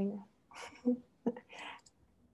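Speech only: a woman's voice trails off at the start, then comes soft, whispered half-words.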